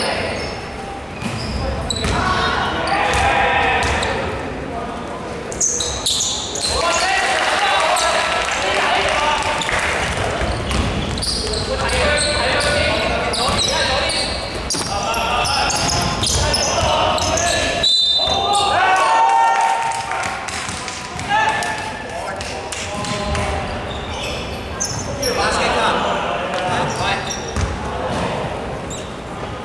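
Basketball bouncing on a hardwood gym floor during play, with players' voices calling out throughout. A brief high-pitched tone sounds about eighteen seconds in.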